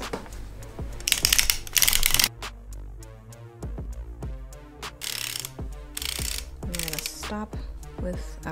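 Hand-cranked circular sock machine with a 64-needle cylinder knitting rounds: a rapid run of clicks and clatters as the latch needles ride up and down the cams, in several short bursts.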